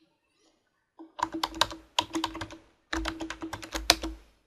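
Typing on a computer keyboard: two quick runs of keystrokes, the first starting about a second in, with a short pause between them.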